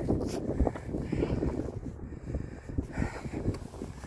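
Wind buffeting the microphone, an uneven low rumble, with a few small knocks and scrapes as a gloved hand handles rock and gravel.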